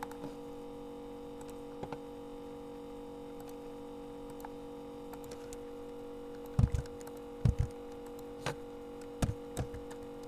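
Computer keyboard keystrokes and mouse clicks, a few faint ones near the start and a cluster of louder ones from about six and a half seconds in, over a steady electrical mains hum.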